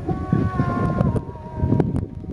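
Wind buffeting the microphone in irregular gusts, with music playing behind it as a few held notes that step slightly lower about a second in.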